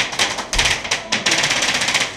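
Rapid paintball fire, sharp pops at roughly ten to twelve a second, coming in quick bursts and running nearly unbroken through the second half.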